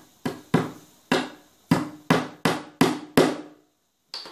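A hammer driving a small nail into a wooden board: about eight sharp, ringing blows, coming quicker in the second half, then stopping just before the end.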